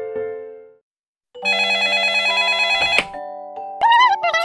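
A telephone bell ringing: one loud, rapidly trilling ring lasting about a second and a half, starting after the last notes of a short keyboard tune fade away. Near the end, a short squeaky gliding voice-like sound.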